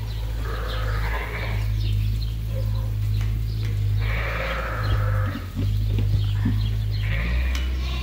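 Lambs bleating, three calls spread across the few seconds, over a steady low rumble.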